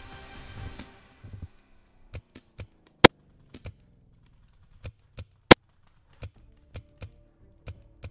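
Background music: a full passage for about the first second, then quiet sustained low notes with sharp, irregularly spaced clicks, two of them much louder than the rest.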